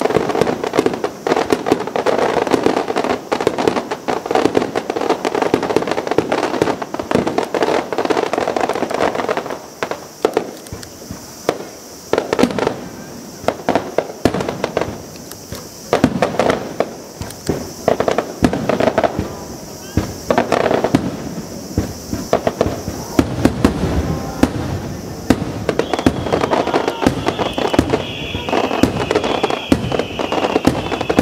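Aerial fireworks shells bursting in rapid succession: a dense barrage of sharp bangs and crackle. It thins to separate booms for several seconds mid-way, then builds back up with a wavering high whistle near the end.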